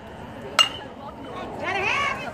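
A metal baseball bat strikes a pitched ball about half a second in, one sharp ping with a short metallic ring. About a second later spectators' voices rise.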